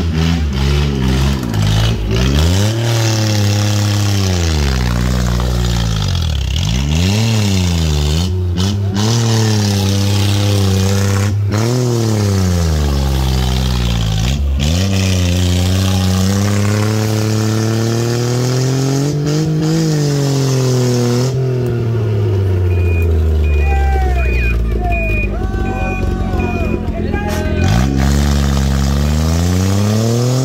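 Engine of a small homemade off-road buggy revving up and falling back again and again as it labours through deep mud. Voices are heard briefly near the end.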